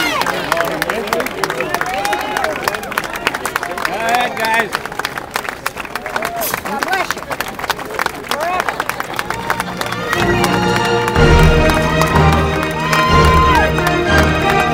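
A crowd of fans clapping and calling out, many voices talking at once. About ten seconds in, music with steady sustained notes and heavy low notes starts and becomes the loudest sound.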